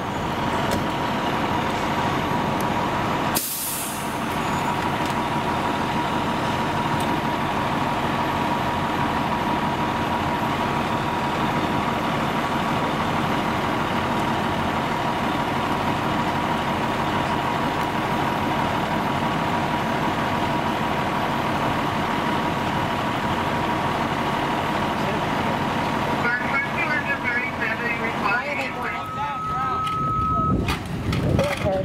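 Fire truck diesel engines running steadily, with a steady high whine over the engine drone. A short sharp burst of air hiss comes about three and a half seconds in, and a steady beep sounds near the end.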